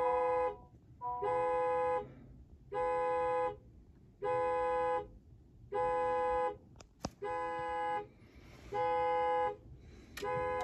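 Honda Accord interior warning chime sounding over and over, a multi-tone chime about every second and a half, while the start button is held and the car reports that no key is detected. There is a single sharp click about seven seconds in.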